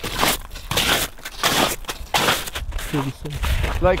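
Boots crunching on the crusty surface of thawing lake ice, in several uneven steps. There is a low rumble near the end.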